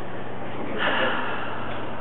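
A short, breathy burst of air from a person, about a second in, over a steady low hum.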